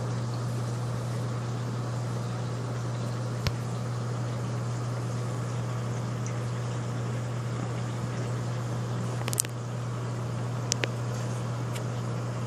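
Steady low hum from a reef aquarium's pump over a constant wash of circulating water, with a few sharp clicks: one about a third of the way in and several in the last three seconds.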